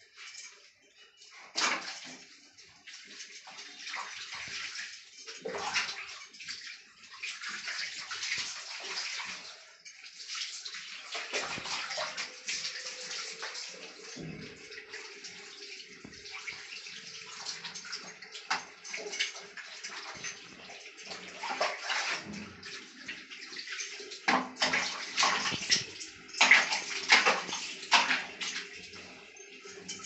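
Water poured from a mug over a baby and splashing onto a tiled floor, with hands sloshing and rubbing wet skin. The splashes come unevenly and are loudest in a run of bursts near the end.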